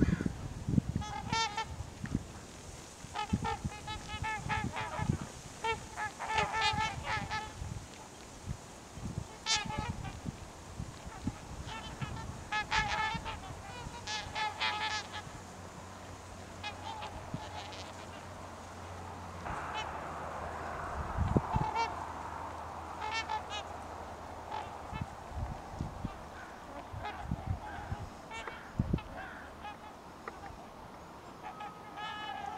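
A flock of swans calling, repeated short honking notes in scattered runs throughout. About two-thirds in, a rush of noise and a few low thumps come through the microphone.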